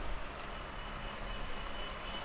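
Soft rustling of a heavy silk saree as it is gathered up and folded, over a low steady hum, with a faint steady high tone in the second half.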